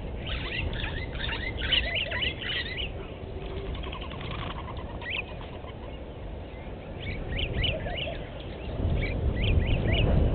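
Birds calling: a dense flurry of short, quick chirps in the first three seconds, scattered calls in the middle, and another run of chirps from about seven seconds. Under them a steady low rumble grows louder near the end.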